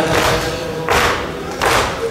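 A congregation beating their chests in unison (latm) to the rhythm of a Muharram lament, three heavy slapping strokes about three-quarters of a second apart, in the pause between the reciter's lines.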